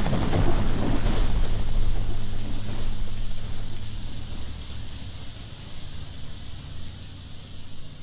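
A rumbling wash of noise, like thunder or a distant explosion, dying away slowly over several seconds as the recording ends.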